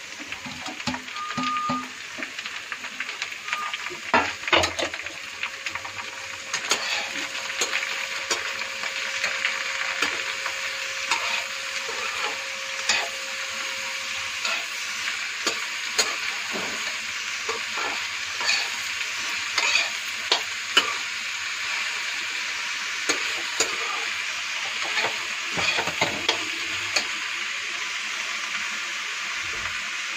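Chopped vegetables sizzling in hot oil in a kadai as they are sautéed together, with a spatula stirring and scraping them, its steady hiss broken by frequent short clicks against the pan.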